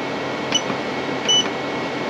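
Two short, high electronic beeps from the keypad of a Growatt 12K solar inverter as its UP button is pressed twice, each press stepping the display to the next reading, over a steady background hum.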